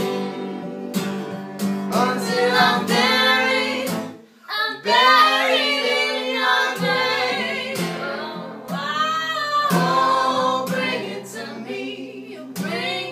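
Live singing with guitar accompaniment, the voice carrying a sung melody over strummed chords, with a brief break about four seconds in.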